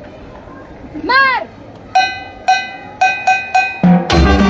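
A short pitched call that rises and falls about a second in, then six sharp, ringing metallic strikes in a count-in rhythm: two even beats half a second apart, then four quicker ones, with the marching band coming in right at the end.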